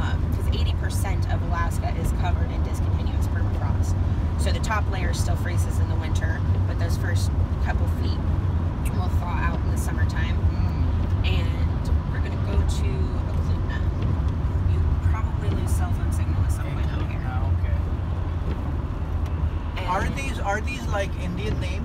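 Steady low rumble of a Chevrolet van's engine and tyres heard from inside the cabin at highway speed, with a voice talking over it.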